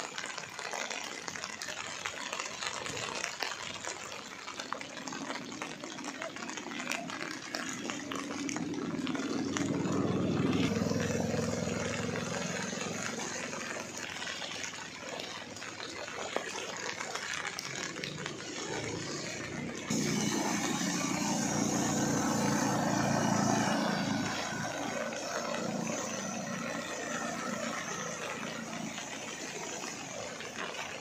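Steady rush of rain and water on a flooded road, with vehicles driving through the water. The noise swells about ten seconds in, then jumps louder at an abrupt change about twenty seconds in before easing.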